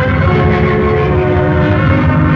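Orchestral film background music: loud sustained chords over a rapid low drum roll.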